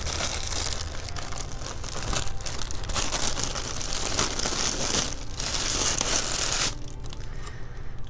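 Tissue paper and clear plastic wrapping crinkling and rustling as a small besom broom is unwrapped by hand. The crinkling eases off for about the last second.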